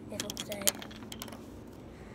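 A few light, sharp clicks and crinkles of thin plastic water bottles being handled, bunched in the first second or so, then quiet.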